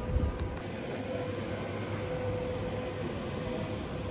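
Steady background hum and hiss of a large airport railway station concourse, with a faint steady tone that fades out about three seconds in and a couple of low bumps near the start.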